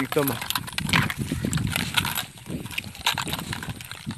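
Irregular footsteps on a muddy dirt path, with brushing and rustling of plants along the way.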